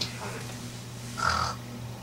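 A single short, harsh cry a little over a second in, over a steady low hum.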